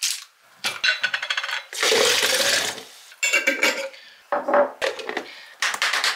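A plastic food storage container with a snap lid and a glass jar being handled and set down on a wooden cutting board: a run of quick clicks about a second in, then several short clattering knocks, a few with a brief clinking ring.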